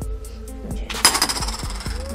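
Background music with a steady beat; about a second in, a short, loud metallic jingle and clatter as a motorcycle cam chain is picked up off a steel workbench.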